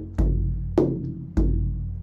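Large hand-held frame drum struck by hand in a slow rhythm: a deep ringing bass stroke, a sharper, brighter stroke, then another deep bass stroke, as in the Egyptian Zaar pattern (doom, ka/tek, doom).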